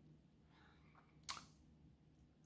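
A faint breath, then a single sharp mouth click, a lip smack, about a second and a quarter in.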